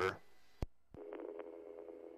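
Police radio channel keyed open between transmissions: a sharp click, then a second click about a second in that opens a steady droning hum on the channel.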